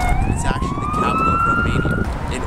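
Emergency vehicle siren wailing in city traffic: its pitch bottoms out and then rises slowly through the whole two seconds, before it cuts off suddenly at the end. Low traffic rumble runs beneath.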